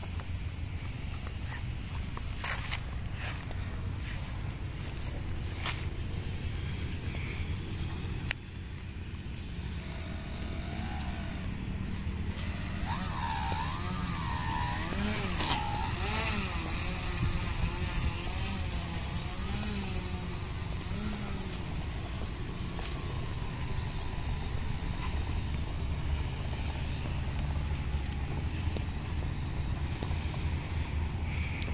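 Small electric motors of a radio-controlled foam model plane running on the ground, their whine rising and falling several times as the throttle is worked, over a steady low rumble of wind on the microphone.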